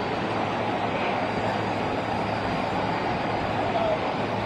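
Steady city street traffic noise with vehicles running close by, over a constant low hum.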